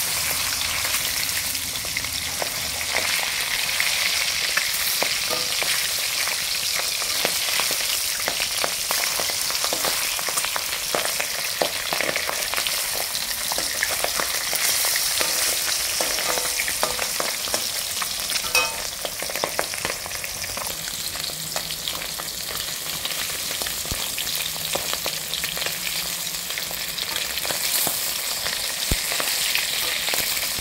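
Fish pieces shallow-frying in hot oil in an aluminium kadai: a steady sizzle full of small crackling pops. A metal spatula turns and scrapes the pieces against the pan.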